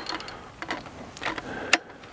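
The iKamper Disco tripod's telescoping metal leg being adjusted by hand, with a few sharp metal clicks from the leg and its adjuster. The loudest click comes near the end.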